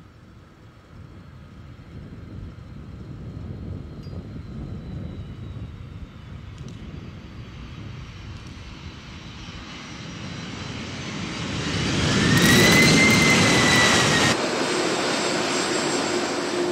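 Airbus Beluga (modified A300) jet freighter landing: its turbofan engine noise builds through touchdown and is loudest about twelve seconds in, with a whine that rises and then falls. The loud part cuts off suddenly about fourteen seconds in, leaving a steadier, quieter engine noise.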